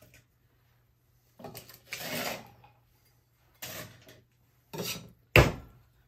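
Ice cubes dropped from an ice bucket into a metal cocktail shaker tin in three separate clattering bursts, then one sharp metallic smack near the end as the two shaker tins are pushed together to seal.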